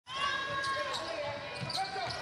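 Basketball bouncing on a hardwood court as a player dribbles, a few irregular bounces.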